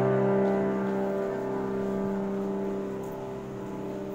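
A piano chord, struck just before, held on the sustain and slowly dying away, with no new notes played.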